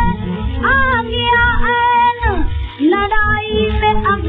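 A woman sings in Hindustani classical style over a steady accompanying drone, holding notes with slow slides between them, from a 1931 Columbia 78 rpm shellac record. The sound is thin, with no high end, over a constant low rumble from the disc surface.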